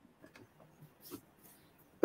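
Near silence: a gap in the call audio, with one faint, brief sound a little past a second in.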